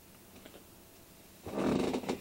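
Quiet room tone, then about a second and a half in a short, loud, rough burst of a man's voice, like a gruff growl or yell, lasting about half a second.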